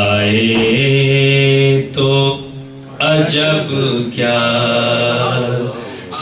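A man chanting devotional verse in a naat style into a microphone, holding long sustained notes, with a brief pause about two seconds in.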